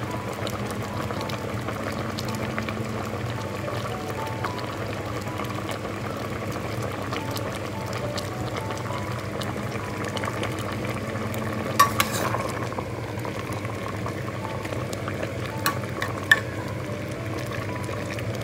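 A pot of bamboo-shoot and mushroom curry at a rolling boil, bubbling steadily. A few sharp clinks come in the second half.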